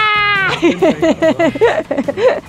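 A man's long, high-pitched shout of triumph, held and ending about half a second in. It breaks into quick, rhythmic bursts of laughter, about six a second.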